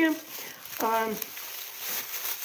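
Thin plastic bag rustling and crinkling as a hand presses a lump of frozen ground beef tripe inside it. A short voiced sound from the person about a second in is the loudest thing.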